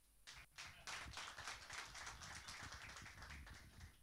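Faint applause from a small group of people, with quick, uneven hand claps that start just after the start and fade out near the end.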